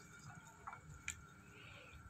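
Near silence, with two faint ticks around the one-second mark as a steel ladle is lifted out of a stainless saucepan of water and tea leaves.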